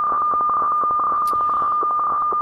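Received HF weather fax (radiofax) signal from a software-defined radio: a steady mid-pitched tone over background hiss, broken by fine, irregular ticks as the keying shifts while the map is transmitted.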